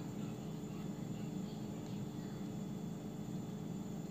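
Steady low background hum with no distinct sounds.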